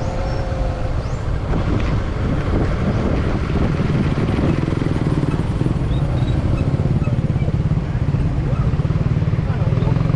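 Motorcycle engine running at low speed with a rapid, even low putter that grows louder in the second half, with people's voices mixed in.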